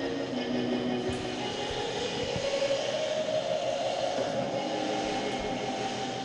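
Aircraft-like sound effect: a steady rushing noise with a tone that rises and then falls, like a plane passing over. A few low thumps are heard under it.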